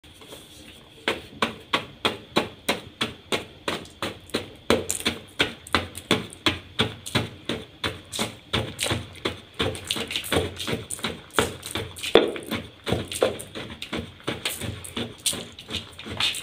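Blocks of gym chalk being pounded in a small bowl with the end of a stick: about three crunchy strikes a second, starting about a second in, as the chunks are crushed down to powder.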